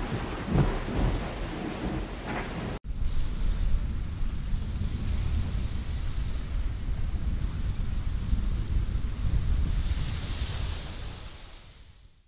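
Rushing water and wind from a 60-foot offshore racing yacht sailing fast through a rough sea at around 20 knots: a steady rush of spray and sea with a deep rumble and wind buffeting the microphone. It cuts off suddenly about three seconds in, and a similar rush of water and wind follows that fades out at the end.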